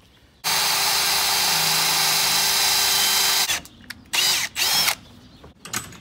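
Milwaukee Fuel cordless drill with a half-inch bit running steadily at full speed for about three seconds as it bores a hole into a wooden board, then a short rev that rises and falls in pitch.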